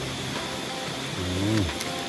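Breadfruit slices deep-frying in a pan of hot oil over a charcoal fire, giving a steady sizzle. About a second and a half in, a person makes a short voiced sound that rises and then falls.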